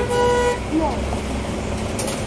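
A vehicle horn sounds one steady, flat note that stops about half a second in. Street traffic rumbles underneath, with snatches of voices.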